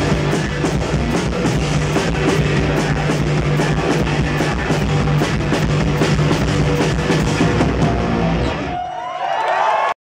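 A punk rock band playing live and loud, with a driving drum beat and distorted electric guitar, recorded from within the audience. Near the end the band stops and a few whoops from the crowd are heard.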